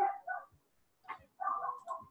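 A child's faint, muffled voice coming through a video call, starting to read aloud in two short bits with a pause between them.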